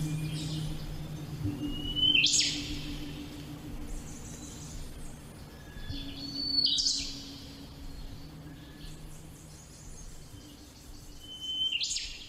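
Bird calls: three short rising whistles, each breaking into a brief chirping burst, spaced about five seconds apart. A faint low drone underneath fades out near the end.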